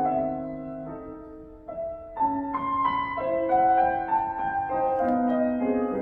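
Solo grand piano being played: a phrase dies away over the first two seconds, then a new, louder passage of overlapping held notes begins a little after two seconds in.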